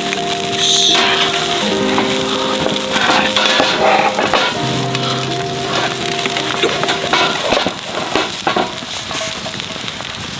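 Gyoza frying in an iron skillet, a continuous sizzle with fine crackling, under background music of held notes that stops about seven and a half seconds in.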